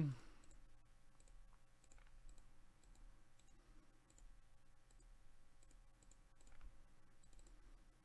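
Faint computer mouse clicks, a few scattered small ticks over a low steady hum.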